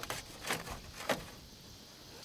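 Two faint knocks, about half a second apart, over a low background.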